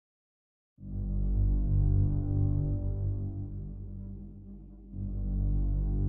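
A deep, steady low hum with several pitched layers begins out of silence about a second in, sinks away around four and a half seconds, and swells back up near the end.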